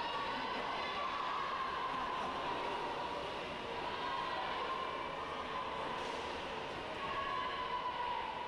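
Steady, echoing indoor pool race noise: spectators cheering and swimmers splashing through butterfly strokes, blended into one continuous wash of sound.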